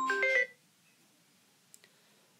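A short electronic chime: a few quick pure-tone notes stepping upward, ending about half a second in, followed by near quiet with a faint click near the end.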